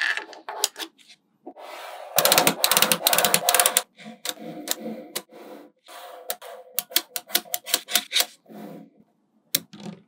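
Small magnetic balls clicking as they snap together and are pressed into place, with a dense rapid rattle of clicks about two to four seconds in, then a string of separate sharp clicks.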